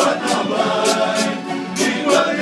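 Bailinho carnival group singing in chorus, men's voices together, with strummed acoustic guitars and a recurring sharp high stroke of percussion or strumming.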